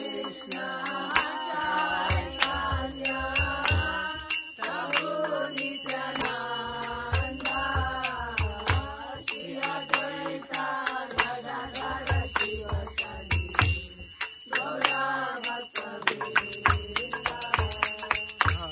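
Devotional kirtan: voices singing a chant over steady strikes of small hand cymbals, with a drum beating low underneath that drops out twice.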